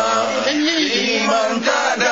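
A group of mostly male voices singing a Malay nasyid (Islamic devotional song) together, holding and bending long sung notes.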